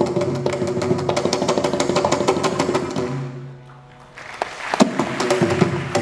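Mridangam playing a fast run of strokes in a Carnatic percussion solo, its tuned strokes ringing. The playing drops away briefly about three and a half seconds in, then the strokes start again.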